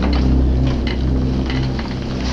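A low, steady drone from a horror-trailer score, with scattered sharp clicks over it.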